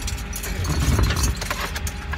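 Irregular clicks and knocks of a car window being closed and of the seat being brushed against, over the steady low rumble of a refuse collection truck outside.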